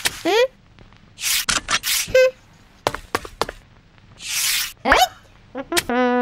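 A string of cartoon sound effects: a short rising squeak at the start, then swishes and quick sharp clicks and knocks, with a brief beep about two seconds in. Another swish and a rising squeak come near the end.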